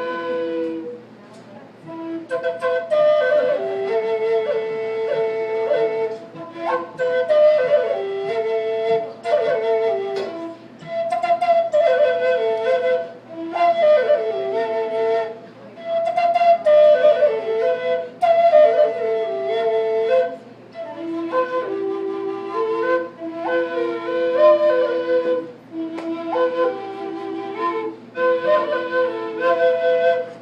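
Native American style drone flute, a two-barrel flute, playing a slow melody. A steady held note sounds alongside the moving tune. Short breath pauses break the phrases every few seconds.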